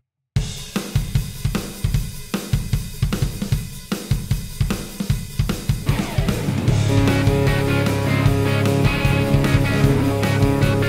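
A drum kit (kick, snare, hi-hat and cymbals) plays a beat on its own after a brief gap. About six seconds in, a bass and double-tracked electric guitars join, the guitars through a Line 6 Helix preset modelling old tweed amps and a Triangle Fuzz.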